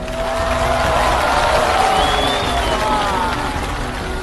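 Studio audience cheering and applauding, a steady wash of crowd noise with a few voices calling out above it.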